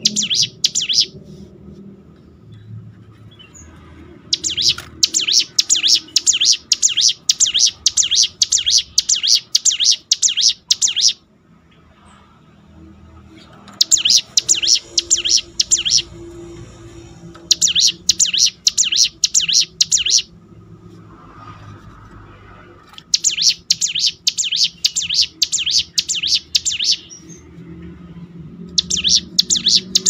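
Ciblek gunung, a prinia, singing a fast series of sharp repeated notes in long runs. Each run lasts one to several seconds, with short pauses between; this is the continuous rattling song that keepers call 'ngebren'.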